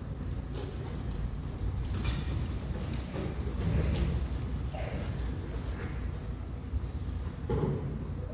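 Low steady rumble of a large hall, with a few scattered knocks and faint indistinct murmurs.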